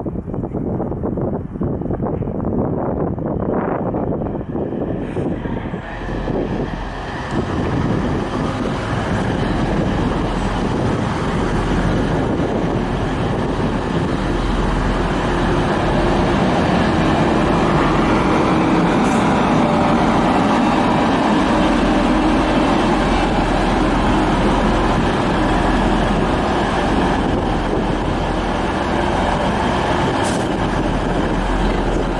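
TransPennine Express Class 185 diesel multiple units running, a steady diesel engine drone that builds over the first several seconds and then holds.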